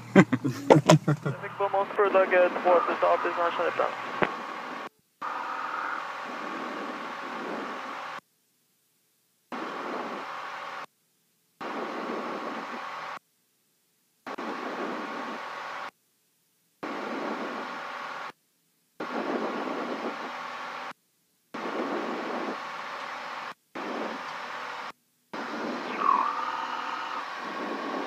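Piper Saratoga II TC's turbocharged six-cylinder engine at takeoff power, heard through the aircraft's headset intercom as a steady drone. The intercom sound cuts out to silence and back about ten times. Laughter is over it in the first few seconds.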